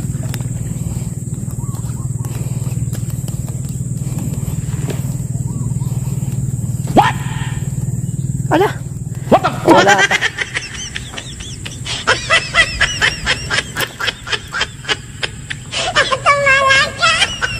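Small boat engine running steadily. About ten seconds in, a man's hearty laughter, quick and rhythmic, takes over.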